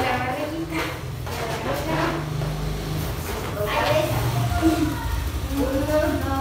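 Indistinct voices in short, separate stretches over a steady low hum, with no clear words.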